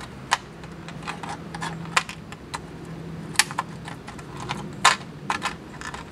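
Thin clear plastic water bottle crackling and clicking in irregular sharp snaps as it is handled and wrapped around a tomato stalk, with two louder snaps a little past the middle.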